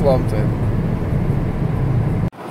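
Steady low rumble of road and engine noise inside the cabin of a Ford Ka 1.0 hatchback cruising at highway speed.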